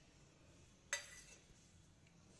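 A single metallic clink about a second in, with a short ring: a small stainless steel bowl knocking against the rim of a steel mixing plate.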